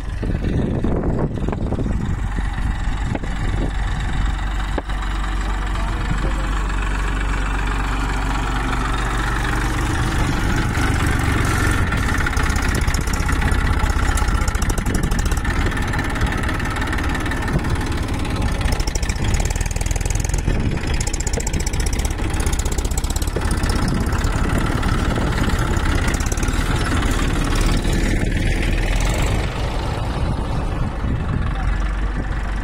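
Massey Ferguson 241 DI tractor's three-cylinder diesel engine running steadily while working earth in a pond pit, getting a little louder about a third of the way in.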